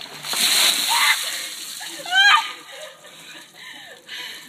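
A large plastic basin of ice water dumped over two people's heads, the water splashing down in a loud rush that lasts about a second. Two rising high-pitched shrieks at the cold, the louder one about two seconds in.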